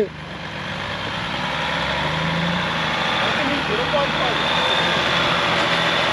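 Off-road Jeep's engine running as it crawls up a rock ledge, growing steadily louder over the first couple of seconds and then holding steady.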